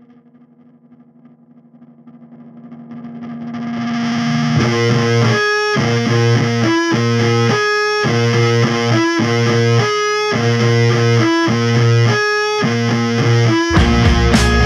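Stoner rock recording: a distorted electric guitar swells in with a held note, then about four and a half seconds in a heavy fuzz riff starts, played in short repeated phrases broken by brief stops.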